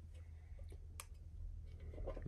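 Faint clicks and light handling of a small metal tin turned over in the hands, with one sharper click about a second in.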